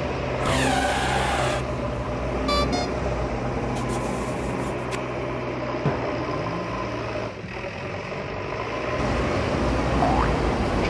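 Truck engine sound effect, a steady low rumble, with a short hiss about half a second in.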